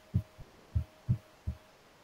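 A series of soft, low thumps, about two to three a second and unevenly spaced, picked up through a laptop or desk microphone.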